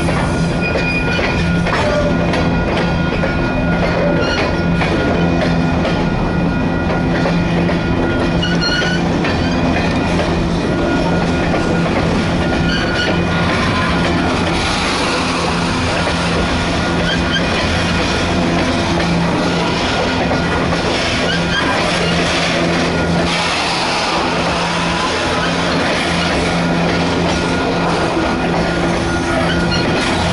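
Freight train's covered hopper cars rolling past close by: a steady, loud run of steel wheels on the rails, with a steady low hum underneath.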